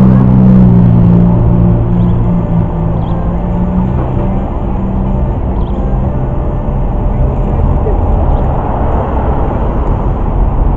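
Electric guitar played through an amplifier, with a low chord held for the first few seconds, then more playing.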